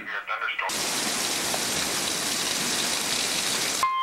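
Hail and heavy rain pelting down in a severe thunderstorm, a dense steady hiss. It starts abruptly under a second in and cuts off suddenly just before the end.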